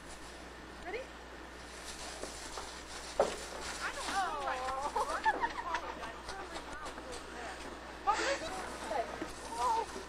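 High-pitched children's voices calling and squealing without clear words, with a sharp knock about three seconds in and more calls near the end.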